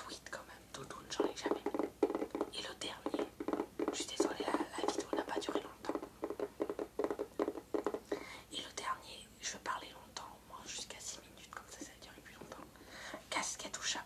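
Fingertips tapping rapidly on a hard white box, a dense run of quick taps for several seconds, then slower scattered taps and handling sounds, with soft whispering.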